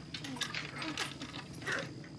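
Quiet rustling of bedclothes and clothing with many small clicks as someone moves on a bed, and a faint breath near the end.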